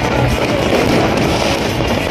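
Aerial fireworks crackling and popping in a dense run, with music playing throughout.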